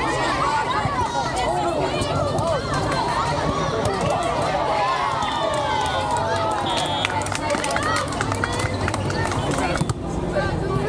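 Many overlapping voices of players and onlookers talking and calling across outdoor volleyball courts, none clear enough to make out. Near the end a quick run of sharp taps and clicks comes through the chatter.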